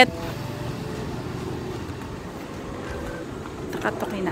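Steady street noise with the low hum of a motor vehicle's engine running nearby, and a brief sharp sound just before the end.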